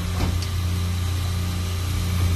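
Steady low drone of running refrigeration machinery, a continuous hum with even overtones.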